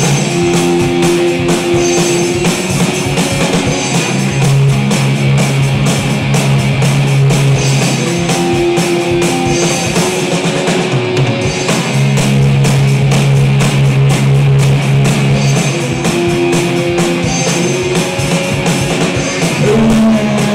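Live rockabilly band playing loudly: a drum kit beating a fast, even rhythm under upright bass and electric guitar.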